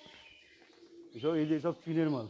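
Pigeons cooing in a cage: two low, wavering coos, the first starting just over a second in, the second near the end.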